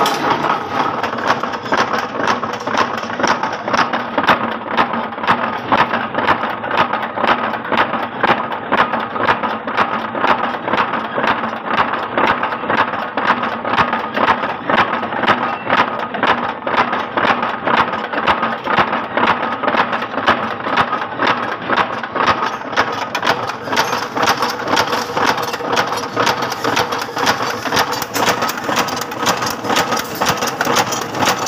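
Flywheel-driven mechanical power press running and cutting hex nut blanks from oiled steel bar. Its strokes clank in a rapid, even rhythm over the steady run of the flywheel and drive.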